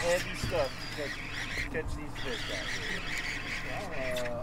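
Baitcasting reel being cranked as a hooked snapper is reeled in, with a steady rippling whir, and faint voices in the background.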